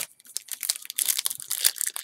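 Foil wrapper of a football card pack crinkling and crackling as it is handled: a dense, irregular run of sharp crackles that gets busier about half a second in.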